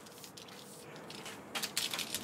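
Quiet handling and movement noise from a person moving about with a tape measure: a faint rustle, then a few light clicks about one and a half seconds in.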